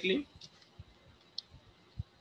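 A few faint, scattered clicks and a sharper click at the very end, from the input device used to draw a line on the lecture slide.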